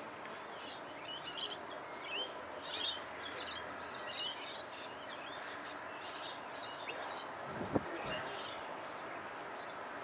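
Small birds chirping in short, quick twittering phrases, on and off, over a steady background hiss. A single brief low thump about three-quarters of the way through.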